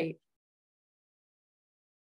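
The clipped end of a spoken word, then dead silence for the rest of the time, as from muted or noise-gated call audio.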